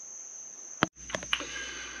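Steady high-pitched insect trill, the chirring of crickets, running throughout. Just before halfway there is a sharp click and a brief dropout, followed by two lighter clicks.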